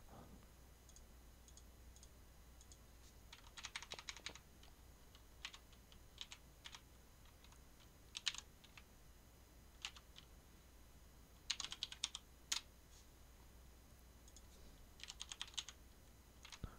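Faint computer keyboard typing in short bursts of a few keystrokes, with pauses between.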